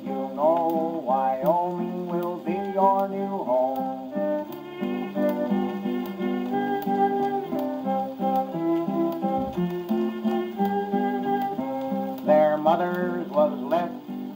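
Acoustic wind-up phonograph playing a 78 rpm shellac record: an instrumental break of a cowboy song, with strummed guitar-like chords and a held melody line through the middle. Faint, regular surface-noise ticks run under the music.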